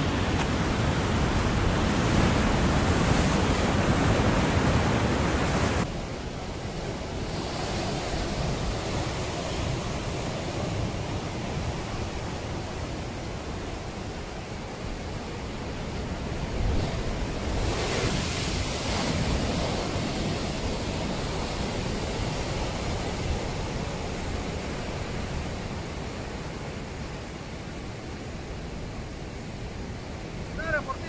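Ocean waves breaking against a rocky shore: a continuous rushing wash of surf, louder for the first six seconds, then dropping suddenly, with a brief swell a little past the middle.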